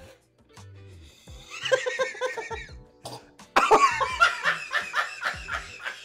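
Background music with a low beat. About one and a half seconds in, a short choking, gagging splutter as a shot goes down, then from about three and a half seconds in, loud, hard laughter.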